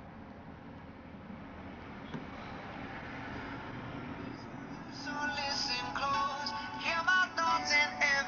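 FM radio broadcast playing through the Samsung Galaxy Player 5.0's small built-in speaker: quiet at first and growing louder as the volume is turned up, then a song with singing comes through from about five seconds in.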